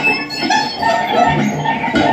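Free improvised music from a small ensemble of violin, electric guitar, kalimba and alto saxophone: a dense, busy texture of many short overlapping notes and sounds with no steady beat.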